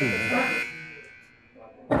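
Electronic buzzer holding one steady, high-pitched tone that fades away within the first second, signalling the end of a debater's turn; voices talk over its start.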